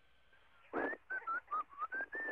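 A man whistling a short tune of about half a dozen quick notes that slide up and down in pitch, with breath noise under them, starting about a second in: an astronaut showing that whistling still works in weightlessness. It comes over the shuttle's space-to-ground radio link, so it sounds thin and band-limited.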